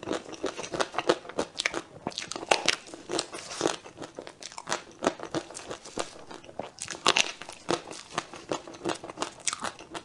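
Biting and chewing a chocolate-shelled, cream-filled dome cake: many short, irregular crunches and crackles of the chocolate coating breaking, mixed with wet mouth sounds of chewing the cream.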